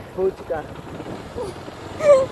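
Motorcycle engine running underway, with wind noise on the microphone, under a few brief bits of a voice.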